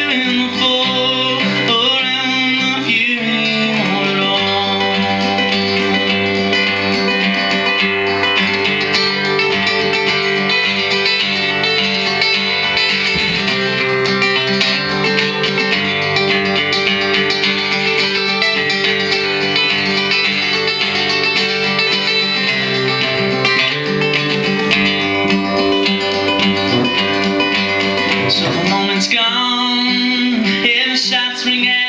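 An acoustic guitar is strummed steadily through an instrumental passage of a live song, with the chords changing every few seconds.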